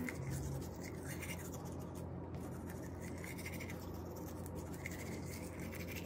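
A toothbrush scrubbing teeth: repeated soft scratchy brushing strokes, with a brief low hum near the start.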